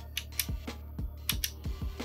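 Power button of an old Sony CD player being pressed over and over, a string of sharp mechanical clicks a few per second.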